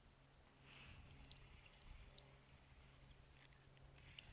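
Near silence: faint outdoor background with a low steady hum and a few faint small clicks.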